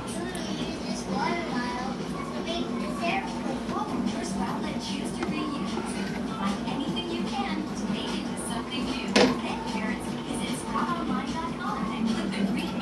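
Faint background voices over a steady low hum, with one sharp click about nine seconds in.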